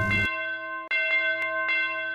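Bells ringing in long, steady tones, struck again about a second in and twice more soon after, each strike ringing on.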